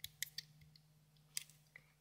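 Faint clicks of rubber bands being stretched and set onto the plastic pegs of a Rainbow Loom: three quick ones at the start and one more about a second and a half in, over a faint low hum.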